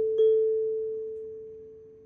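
A single pure chime tone in an intro logo jingle, struck again just after the start and then ringing out, fading steadily away.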